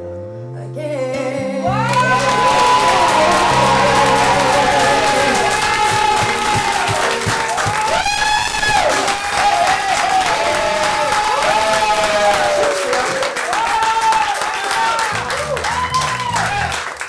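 An acoustic guitar's final chord rings out. From about two seconds in, an audience breaks into applause and cheering with whoops, and the cheering lasts until the end.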